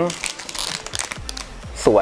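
Clear plastic bag crinkling as it is handled with plastic model-kit runners inside, irregular rustling throughout.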